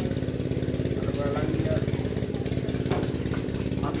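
A small engine running steadily in the background, a low hum with a fast, even pulsing.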